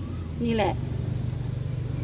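A steady low mechanical hum, like an engine running nearby, under one short spoken phrase.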